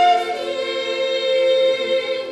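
A vocal ensemble of young female singers with accordion accompaniment, holding sustained notes; the melody steps down shortly after the start and the new note is held.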